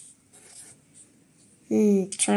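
Faint scratching and rubbing of a pencil tip on a book's paper page, then a voice starts a long held vowel near the end.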